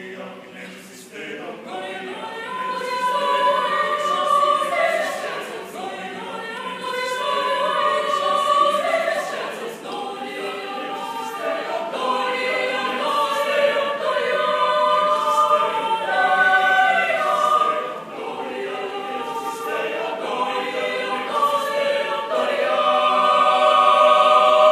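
Mixed choir of women's and men's voices singing a sacred choral piece a cappella, in sustained chords that start soft, swell a couple of seconds in and build to their loudest near the end.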